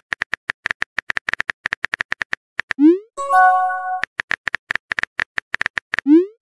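Smartphone keyboard typing clicks in a quick, even run, then about three seconds in a rising pop and a short chiming chord as a message is sent, followed by another run of typing clicks.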